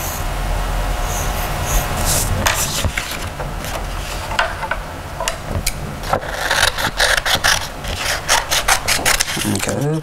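Pencil scratching on brown construction paper as shapes are drawn. From about six seconds in, scissors snip through the paper in quick, repeated cuts.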